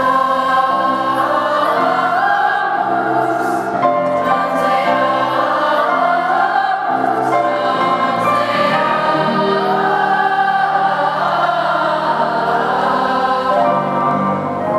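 A youth choir singing together, holding long notes at a steady volume throughout, in a church.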